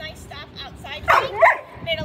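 A dog barks twice in quick succession about a second in. The barks are short, loud and high-pitched.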